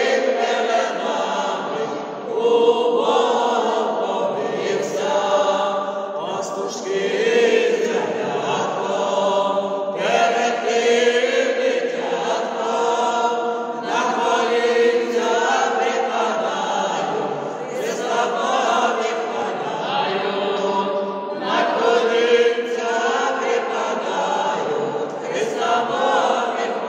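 A small mixed vocal ensemble of women and men sings a Ukrainian Christmas carol (koliadka) unaccompanied. It comes in sung phrases of a few seconds each, with brief breaths between them.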